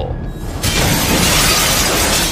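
Crashing, shattering sound effect of debris breaking apart, starting about half a second in and running on, over background music.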